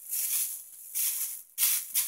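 Clear plastic packaging bag crinkling as it is handled, in three crackly bursts.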